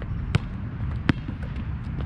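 A basketball bouncing twice on an outdoor hard court, two sharp thuds about three-quarters of a second apart.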